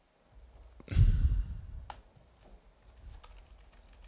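Computer keyboard typing, a few scattered key clicks, as a web address is typed into a browser. A loud low burst of noise on the microphone comes about a second in.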